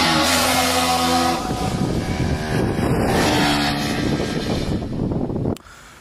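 Electronic music mixed with a Bajaj Pulsar NS200 motorcycle engine running during a wheelie, its steady pitched tones stepping between levels. The sound cuts off suddenly about five and a half seconds in.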